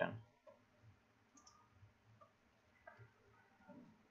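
A few faint, scattered keystroke clicks from a computer keyboard as code is typed.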